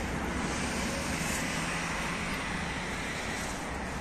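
Steady outdoor street background: a low, even rumble of road traffic.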